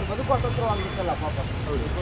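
A man's voice talking, over a steady low rumble of background noise.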